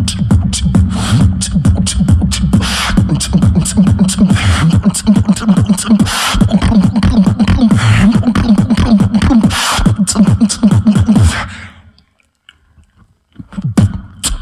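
Solo beatboxer performing into a handheld microphone: a fast, dense rhythm of drum-like hits and hiss over a low bass line that moves up and down in pitch. It cuts off suddenly about eleven and a half seconds in, with a short pause before the beatboxing starts again near the end.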